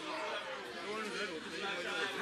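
Several people chattering at once, with a laugh at the start.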